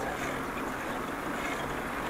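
Steady, even riding noise from a bicycle rolling along a paved path: tyre noise and air rushing past the handlebar-mounted camera, with no distinct knocks or clicks.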